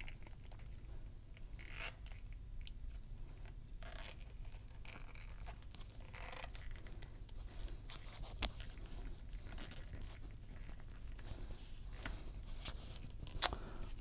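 Faint, scattered clicks and rustles of small plastic parts being handled as the head of a 1/6 scale action figure is worked off its neck joint, with one sharper click near the end.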